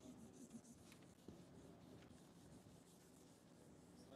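Near silence, with a faint marker pen rubbing on a whiteboard as writing goes on and a few faint ticks.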